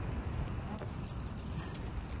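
Low rumble of wind and handling on a phone microphone as its holder walks across a street. About a second in, a light, high metallic jingling starts.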